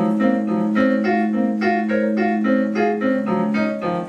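Electronic keyboard played with a piano sound: a low note held throughout under a steady run of short single melody notes, about three or four a second.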